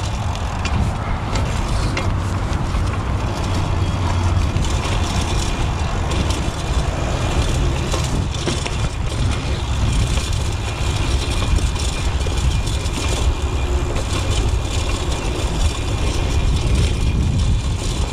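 A BMX rolling fast down a dry dirt trail: tyre rumble and the bike rattling over bumps and loose stones in many small ticks, under steady wind rush on the camera microphone.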